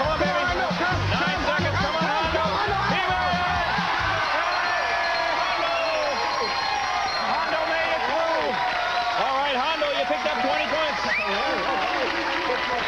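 Upbeat game-show music with a steady beat, under a crowd of voices shouting and cheering. The music stops about four seconds in, and the shouting and cheering carry on.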